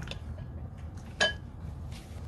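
Chopsticks stirring beaten egg in a glass bowl, quietly, with one ringing clink of chopstick on glass about a second in.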